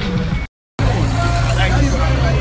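Voices in a street crowd, cut off abruptly by a brief silence, then the steady low hum of a vehicle's engine with people's voices over it.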